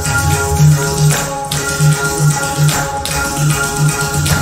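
Live Kathak dance accompaniment: held melodic notes over a pulsing pattern of low drum strokes, with jingling and sharp taps that fit dancers' ghungroo ankle bells and footwork.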